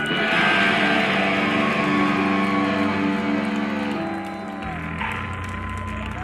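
Live death/thrash metal band's distorted electric guitars holding a ringing chord, struck together with a crash right at the start and dying away over about four seconds; a low bass note comes in near the end.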